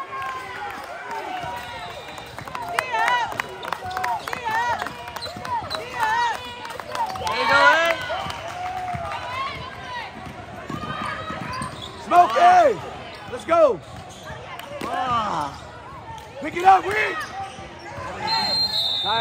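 Basketball play on a hardwood court: sneakers squeak in short rising-and-falling chirps that come in clusters, a ball bounces, and voices call out in the gym.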